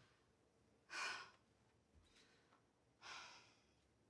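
A woman sighing: two faint breathy sighs about two seconds apart.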